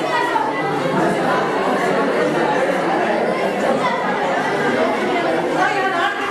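Many students talking at once, a steady classroom chatter of overlapping voices with no single voice standing out.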